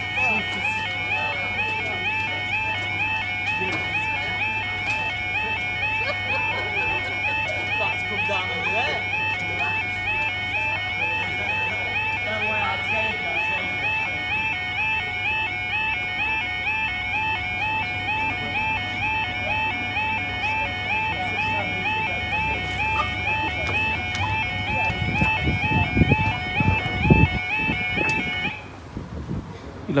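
UK level crossing audible warning alarm sounding its yodelling two-tone warble, repeating a few times a second, warning of an approaching train. It cuts off suddenly shortly before the end, and a low rumble rises beneath it in the last few seconds.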